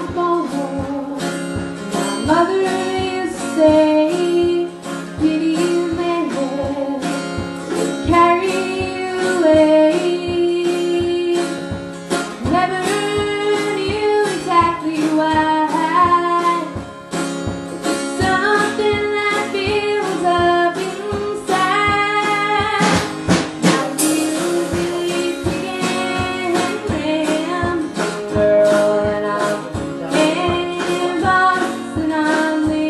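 A woman singing a country song live, strumming an acoustic guitar, with a drum kit keeping a steady beat.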